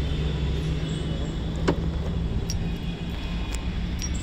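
A car engine idling steadily, with one sharp click about halfway through.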